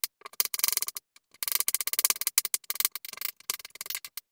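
Kitchen knife chopping vegetables on a wooden cutting board: fast runs of sharp knocks against the wood, broken by short pauses.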